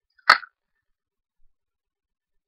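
A single short, sharp click about a third of a second in, followed by a faint tick about a second later.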